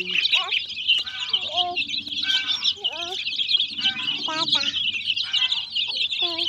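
A large flock of chicks peeping continuously, a dense chorus of short high chirps. Lower, bending calls cut in about once a second.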